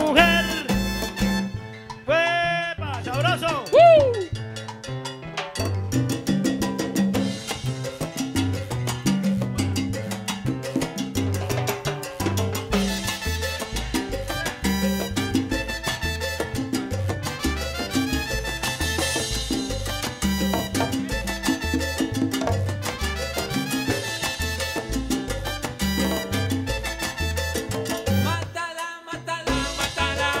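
Live salsa band playing an instrumental passage with a steady, driving rhythm, with a short melodic phrase that slides in pitch about three seconds in.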